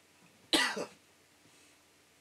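A single short, sharp cough from a man, about half a second in.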